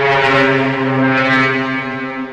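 Music: one long, low horn-like note held steadily at a single pitch.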